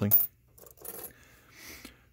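A few faint metallic clinks of loose coins knocking together as one is picked out of the pile.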